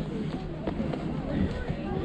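Footsteps knocking on the wooden plank deck of a swaying suspension footbridge, with a low steady rumble and other people's voices faintly in the background.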